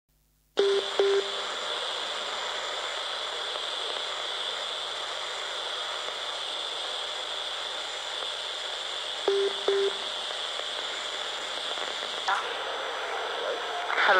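Radio scanner hiss on an open channel tuned to an analogue mobile phone frequency, before the intercepted call is heard. A short double beep comes about half a second in and again about nine seconds in, and a brief warbling chirp comes near the end.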